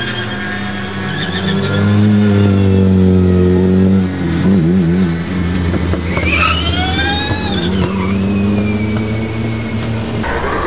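Engines of several rally and race cars running as they drive up the course in a line, with a steady low engine note throughout. One engine revs up and back down about six to eight seconds in.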